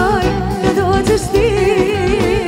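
Live band music with a woman singing into a microphone, holding long notes with a heavy wavering vibrato over a steady pulsing bass line.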